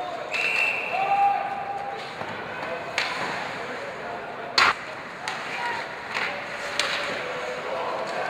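Ice hockey arena sound: crowd noise with a short high whistle near the start and several sharp clacks of sticks and puck on ice and boards, the loudest about halfway through.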